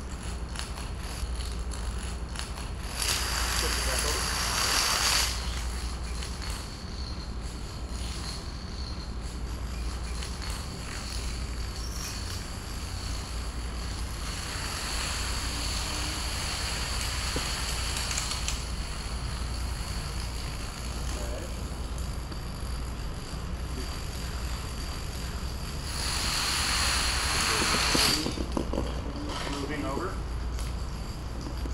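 Thousands of plastic dominoes toppling in a chain reaction: a continuous clicking clatter. It swells into a louder rush twice, about three seconds in and again near the end.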